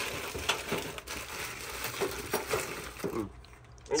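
Plastic bags of parts crinkling and rustling, with short light clicks and knocks from the parts and plastic bins being rummaged through.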